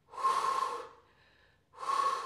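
A woman breathing hard through the mouth: two audible breaths, one early on and another starting near the end, from the effort of weighted glute leg lifts.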